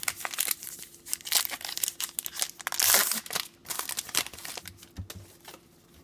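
A trading-card pack wrapper being torn open and crinkled by hand, a run of crackles with the loudest rip about three seconds in, then dying down.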